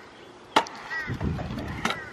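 Stunt scooter rolling over concrete in a skatepark bowl, its wheels rumbling, with two sharp clacks of the scooter striking the concrete, one about half a second in and one near the end.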